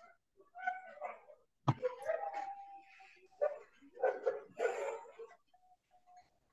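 A domestic animal crying and whining in several short calls, one held for nearly a second midway, with a sharp click a little under two seconds in.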